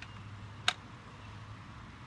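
One sharp mechanical click about two-thirds of a second in, from a vintage Bates flip-up desk address index being worked by hand, over a faint steady low hum.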